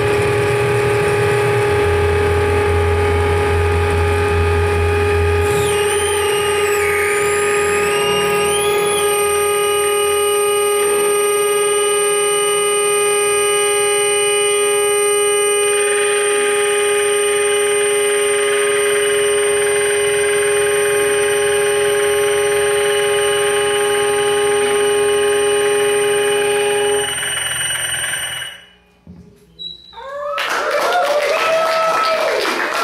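Analog synthesizer and mixer-feedback noise: many steady electronic drones and whines stacked together, with a low hum that drops out about five seconds in and high tones wavering up and down for a few seconds after. The whole sound cuts out near the end as the piece finishes.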